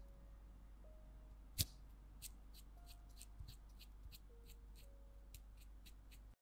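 Faint clicks and small taps of hands and tools working tiny clay pieces at a work surface, one sharper click about a second and a half in, then a quick run of light ticks, over a low steady hum.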